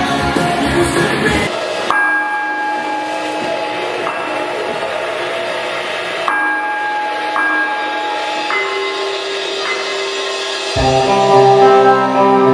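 Rock band music. A full passage breaks off about a second and a half in. A sparse stretch of held notes with no bass or drums follows. Near the end the full band comes back in with bass and drums.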